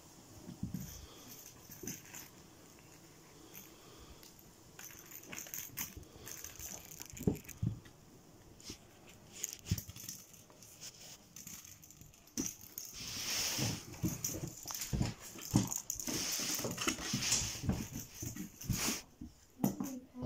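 A house cat at play: scattered light taps and thumps of paws and a toy ball on a wooden floor and rug, with a longer stretch of rustling and scrabbling in the second half.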